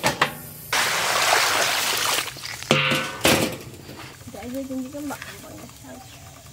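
Water being poured out of a large iron wok, a steady rush lasting about a second and a half, followed by a few clanks of metal cookware against the wok.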